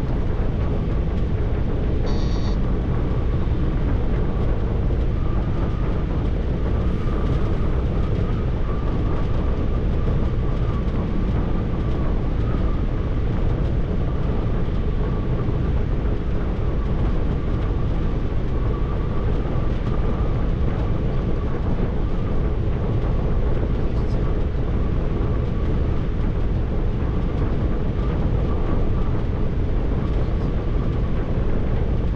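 Steady low road and engine rumble inside a truck cab cruising at motorway speed, with a faint steady whine above it.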